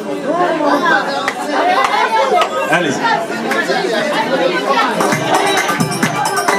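A man singing an Arabo-Andalusian melody in a winding, ornamented line, with oud and derbakké (goblet drum) accompaniment and other voices in the room joining in.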